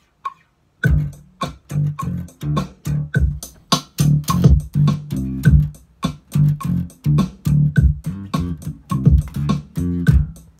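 Electric bass guitar playing a funk bass line over a drum beat, the bass coming in a little under a second in with short repeated low notes.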